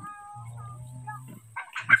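A chicken calling in one drawn-out call lasting about a second and a half, with a low steady hum beneath it.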